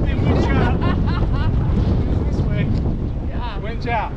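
Wind buffeting the microphone, a steady low rumble, with voices over it near the start and again near the end.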